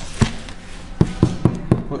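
About five short knocks of a hand tapping on a cardboard product box on a table.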